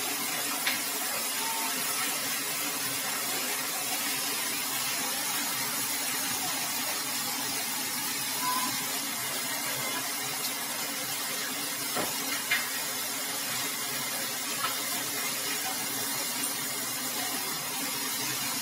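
High-pressure water jetting from a burst water supply pipeline, a fountain more than 15 feet high: a steady hissing spray, with a few faint clicks.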